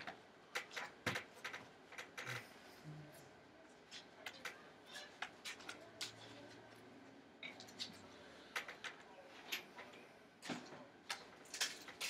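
Irregular light clicks and taps of a small screwdriver working the bottom case screws of a MacBook Air, metal on metal against the aluminium case, with handling knocks as the laptop is turned over.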